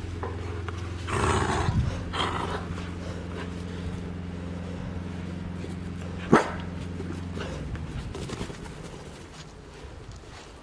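Corgi puppy growling and barking in play over a held-up tennis ball, with one sharp bark about six and a half seconds in, over a steady low hum that fades out near the end.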